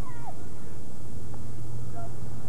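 A single short, high-pitched shout near the start that falls in pitch, from a player or spectator at the field, over a steady low hum.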